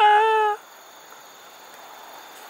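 A man's voice calling out one high, held note for about half a second, then only faint steady open-field background.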